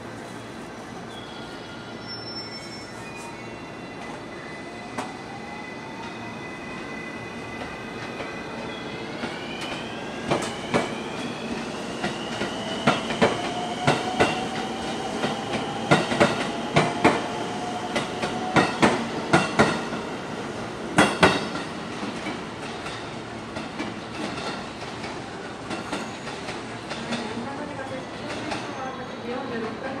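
JR West 223 series electric train departing. Its traction motors whine in several tones that climb in pitch in steps as it accelerates, then one tone holds steady, while the wheels clatter over rail joints and points in a quick, irregular run of sharp clicks through the middle. The clicks thin out as the train moves away.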